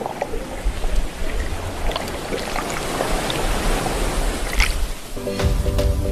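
A steady rushing noise, like water or surf, with scattered faint clicks. Background music with a heavy bass comes in about five seconds in.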